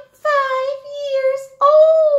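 A high-pitched, sing-song puppet voice, drawn out in long held notes at a nearly steady pitch, with a short break about one and a half seconds in.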